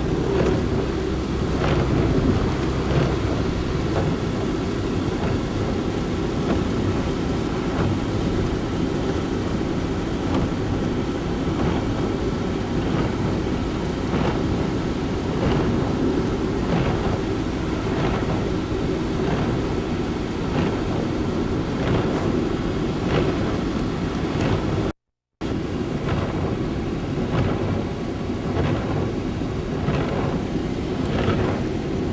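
Rain hitting a moving car's windshield and roof, heard from inside the cabin over a steady low rumble of tyres on wet road and the engine. The sound cuts out for a split second about 25 seconds in.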